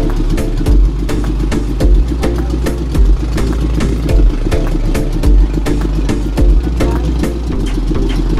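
Background music with a steady beat: deep bass thumps under quick clicking percussion and a sustained pitched line.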